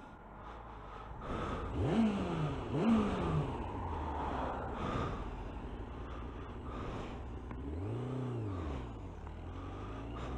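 Motorcycle engine revved twice in quick succession about two seconds in, each rev rising sharply in pitch and dropping away, then running steadily with wind and road noise; near the end the engine note rises and falls once more.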